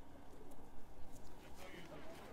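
A bird calling over faint voices of people.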